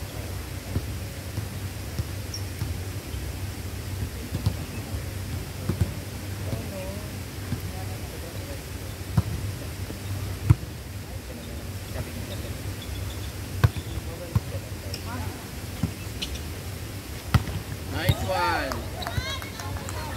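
A volleyball being struck during a rally: several sharp slaps of hands and forearms on the ball a few seconds apart. Players' voices are scattered throughout, with a shout near the end, over a steady low background rumble.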